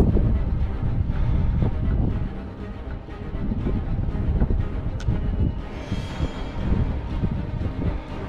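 Music playing under heavy wind buffeting on the microphone, a gusting low rumble.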